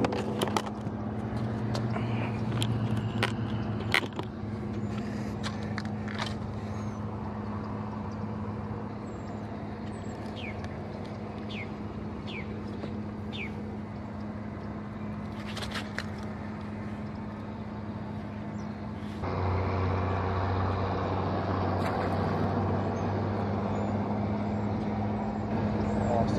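Steady low outdoor hum with a constant low drone, which grows louder about nineteen seconds in. There are knocks and clicks of handled gear in the first few seconds, and three short falling chirps about ten to thirteen seconds in.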